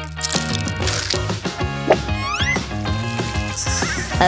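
Background music with a rising, whistle-like sliding sound effect about two seconds in.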